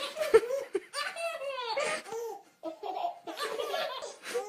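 A baby laughing hard in a string of short bursts.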